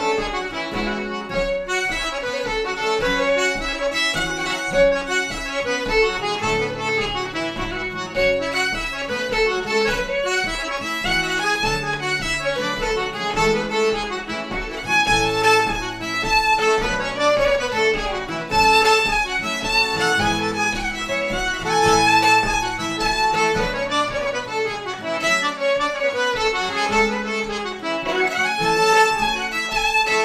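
Traditional Québécois fiddle tune played by a trio: fiddle and diatonic button accordion carrying the melody over acoustic guitar chords and bass notes, in a steady, repeating rhythm.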